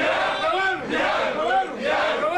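Men's voices raised in loud, shouted calls, several voices overlapping at once with pitch rising and falling.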